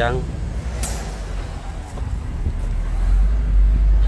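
FAW JH6 truck's engine and drivetrain drone, heard from inside the cab while driving, with a brief hiss about a second in. The low rumble grows louder near the end.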